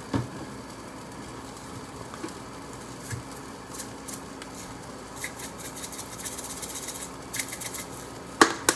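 Black bean burger patties frying in a hot pan with a steady, quiet sizzle. A few light clicks and a short crackly rustle of handling come near the end.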